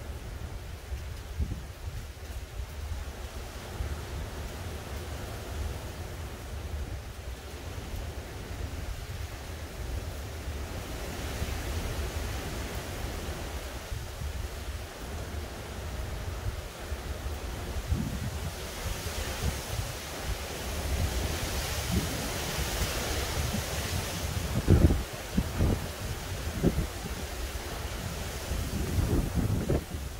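Gusty hurricane wind blowing through trees, with a stronger, hissing gust building about two-thirds of the way through. The wind buffets the microphone, giving a low rumble and a few sharp thumps near the end.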